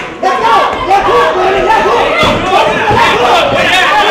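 A crowd of spectators shouting, with many voices yelling over one another.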